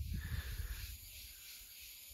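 Quiet outdoor background at a stream bank: a faint low rumble with a steady thin hiss, a little louder in the first second, then dropping lower.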